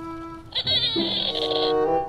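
Battery-powered plastic toy space gun sounding its electronic effect: a high warbling tone over lower electronic tones, starting suddenly about half a second in and stopping just before the end, over background music.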